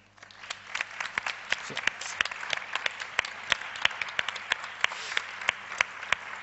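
Audience applauding, the clapping building up within the first second and then going on steadily.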